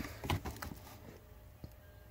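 Cardboard parts boxes being handled and shuffled: a few light knocks and rustles in the first second, then a single small click, otherwise faint.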